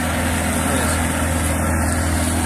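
A 40 hp outboard motor running steadily at cruising speed, pushing a small aluminium boat, with a constant low hum over the rush of water and wind.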